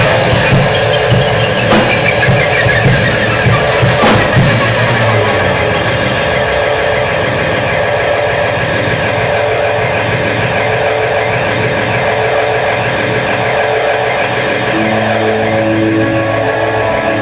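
Rock band playing live on electric guitar, bass guitar and drum kit, loud, with cymbals crashing. About six seconds in the drums stop and the guitars are left holding sustained, ringing notes.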